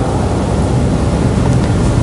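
Steady rushing background noise with a low rumble under a hiss, holding level throughout with no speech.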